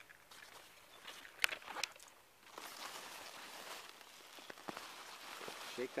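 Faint rustling of beet leaves and wood-chip mulch as a beet is pulled up by its tops, with a few sharp crunchy clicks about a second and a half in.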